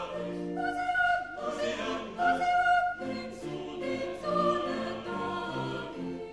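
Mixed choir singing a classical piece with cello and double bass accompaniment, in sustained chords that move from note to note under a clear high soprano line.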